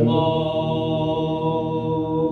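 A young male singer holding one long, steady sung note in a slow lullaby-style song, with music underneath.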